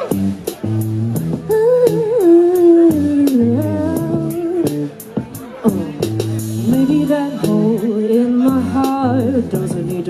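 Indie synth-pop band playing live: drum kit with steady hi-hat ticks about four a second, a bass line changing notes in blocks, and a wavering lead melody over the top.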